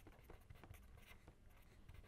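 Faint scratching of a pen writing on paper, a quick series of short strokes.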